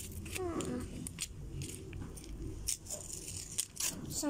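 Paper and plastic blind-bag wrapping crinkling as it is torn and unwrapped by hand, in irregular crackles.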